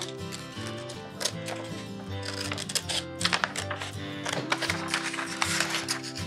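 A pair of scissors snipping through printer paper in a series of short, irregular cuts, over background music with sustained notes.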